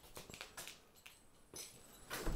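Near silence with a few faint clicks and light metal clinks from horse tack hanging on a hook, quirts and a twitch being handled.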